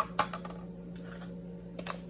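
A metal spoon clinking against a glass tumbler twice as the stirring of a drink ends, followed by faint handling and one more light click near the end.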